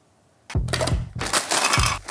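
Plastic nut packet crinkling and crackling as it is snipped open with kitchen scissors, starting about half a second in.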